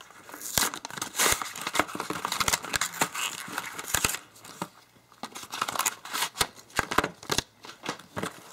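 Phone-case retail packaging being opened by hand: the cardboard box and clear plastic tray rustle, with irregular sharp clicks and snaps.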